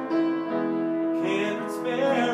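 A man singing his own song to his own piano accompaniment, holding one long note for about a second before moving on.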